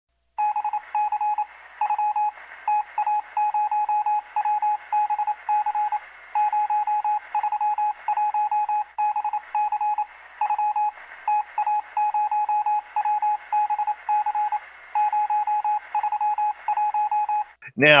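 Electronic beeping at a single pitch, keyed on and off in short and long beeps in an uneven rhythm like Morse code, over a thin, narrow hiss like a radio or phone line. The beeping stops just before a man's voice comes in at the very end.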